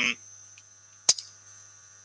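Steady electrical mains hum with a thin high whine from the sound system, and a single sharp click about a second in.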